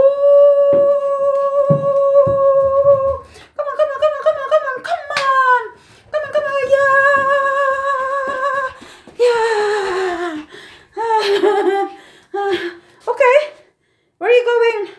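A woman humming long, wordless notes. Some are held steady for about three seconds, others waver or slide downward, with breaks between phrases and a few soft thumps in the first seconds.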